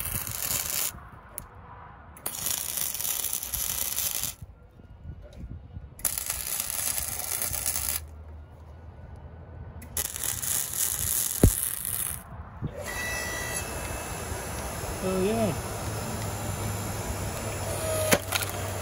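Wire-feed welder arc crackling and spitting in four runs of about one to two and a half seconds each, with short pauses between them. For the last few seconds a steady low hum takes over, from the electric log splitter's motor running.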